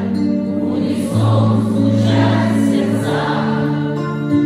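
Live rock band music, recorded from the audience in a concert hall: long held, choir-like chords over the band, changing every second or two, in a passage between the sung lines.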